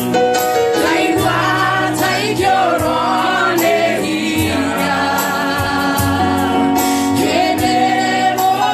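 Gospel singing with several voices together over an instrumental backing with regular percussion hits.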